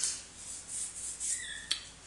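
Hands moving and brushing over the table and the items on it, a soft rustling with one sharp click near the end.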